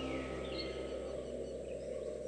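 Faint birdsong, a few short high chirps, over a low steady background hum, as the last notes of a devotional song die away.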